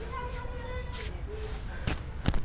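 Children's voices calling in the distance: one drawn-out high call, then a few shorter ones. A single sharp knock comes near the end.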